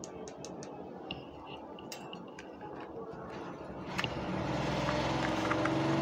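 Small clicks and taps of a ring light and its power cable being handled, then about four seconds in a generator starts up and runs steadily with a low hum.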